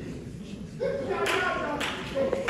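Hand claps in a steady rhythm, about two a second, starting about a second in, with a voice under them.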